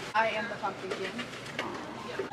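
Short, indistinct speech-like voice sounds, loudest in the first half second.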